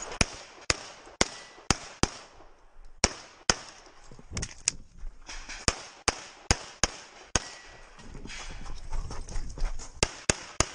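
Glock 34 Gen5 9mm pistol firing a string of shots during a practical-shooting stage, about two a second, with two short pauses when the shooter moves between positions.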